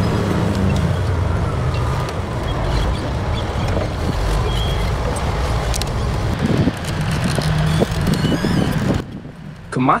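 Giant Komatsu D575A-3SD Super Dozer's twelve-cylinder diesel engine running, a steady heavy low rumble, with people talking indistinctly in the background; it fades away about nine seconds in.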